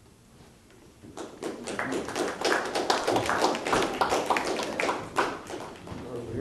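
A small audience applauding: a burst of many hands clapping that starts about a second in and fades out near the end, lasting about four seconds.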